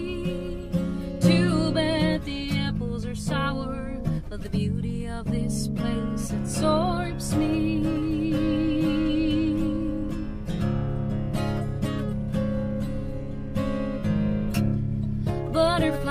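Acoustic guitar being strummed and picked, with a woman's singing voice over it at times, held notes wavering in pitch.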